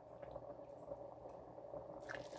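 Faint liquid sounds of a steel ladle scooping hot broth from a stockpot, over a low steady background.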